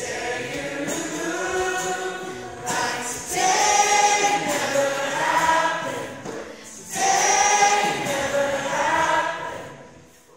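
A live concert song: the audience sings along in chorus with a singer and acoustic guitar, in sustained phrases that swell louder about three and seven seconds in, then fade out near the end.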